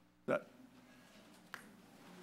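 A short, loud vocal sound, a single brief syllable just after the start, then faint room murmur with one sharp click about a second and a half in.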